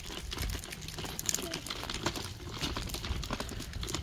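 Footsteps crunching and scuffing on a wet gravel driveway with patches of slushy snow, an irregular run of small crunches.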